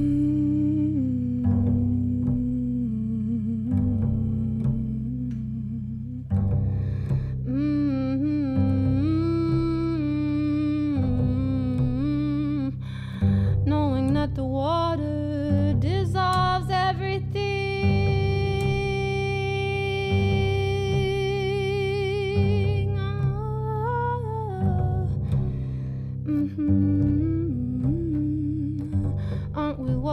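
A woman humming and singing a wordless melody over her own upright double bass, with low bass notes sounding every second or two. Her voice holds one long note from about eighteen to twenty-two seconds in.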